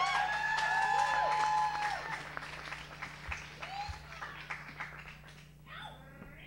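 Audience applauding and cheering, with a long held call and whoops over the clapping in the first two seconds; the clapping then thins out and dies away.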